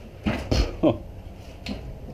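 Junk being handled and shifted: a quick cluster of knocks and clatter about half a second in, then a single faint click.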